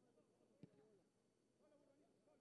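Near silence: faint, distant players' shouts with one soft thump about half a second in.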